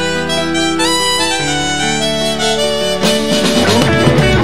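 A live dangdut band plays an instrumental passage: a lead melody in long held notes over bass and rhythm. About three seconds in, an electric guitar comes in with a run of quick notes.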